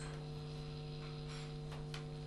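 Steady low electrical hum at a low level, with a few faint, brief soft rustles.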